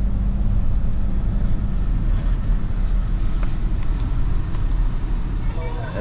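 Car cabin noise while driving: a steady low engine hum and road rumble heard through the windshield.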